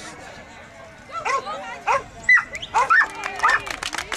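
A dog barking in short excited barks, starting about a second in and coming every half second or so, one a higher yip about halfway.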